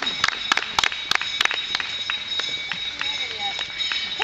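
Spectators clapping, sharp irregular claps several a second that thin out about halfway through, over a steady high-pitched tone.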